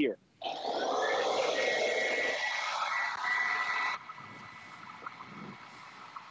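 Upright carpet-cleaning extractor (carpet shampooer) running over a rug: a steady rushing suction noise with a high whine, starting about half a second in and cutting off abruptly about four seconds in, leaving a faint hiss.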